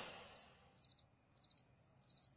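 Near silence with faint cricket chirps: short, high trills about every half second, the stock cue for an awkward silence when nobody cheers.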